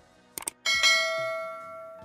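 Subscribe-and-bell animation sound effect: two quick clicks, then a bright bell chime that rings out and fades over about a second and a half.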